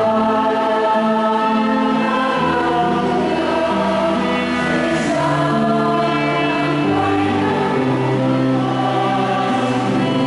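Choir singing a slow hymn with instrumental accompaniment, the notes long and held.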